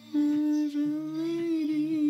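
A person humming one long held note of a lullaby, its pitch wavering slightly, with quieter low notes sounding underneath.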